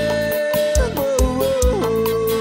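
A male singer holds a long sung note into a microphone, then slides down to lower notes, over electronic keyboard backing with a steady kick-drum beat about twice a second.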